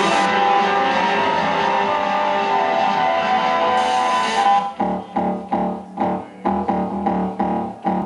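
Live electronic music played on synthesizers and electronic gear: a dense, distorted, guitar-like sustained wash that about halfway through breaks into chord stabs pulsing about twice a second.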